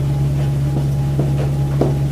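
Steady low electrical hum, with a few faint short strokes of a marker writing on a whiteboard in the second half.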